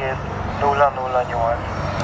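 Men talking over a steady low engine drone from a vehicle running in the background.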